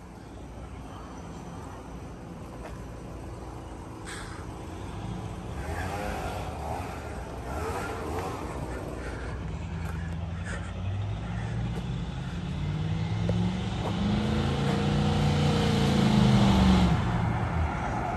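An old box-body Chevrolet's engine approaching and growing steadily louder, its pitch rising and falling as it is driven and revved up the street.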